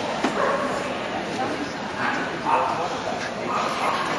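A dog vocalizing a few times over the indistinct chatter of a crowd.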